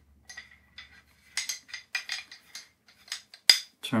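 Light irregular clicks and taps of two whistles being handled and knocked against each other as they are lined up side by side, with one sharper click about three and a half seconds in.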